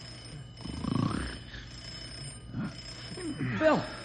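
Telephone bell ringing in bursts, with a man's voice speaking briefly near the end.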